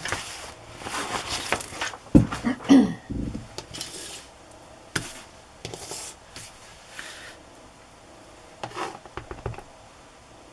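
Tabletop crafting handling noises: a large glossy sheet sliding and rustling as it is pulled off a cutting mat, two dull thumps a little after two seconds in, then scattered light clicks and taps as a clear acrylic stamp block and other stamping tools are picked up and set down.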